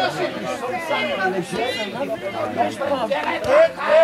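Several voices of players and spectators at a football match calling and talking over one another, with a louder shout about three and a half seconds in.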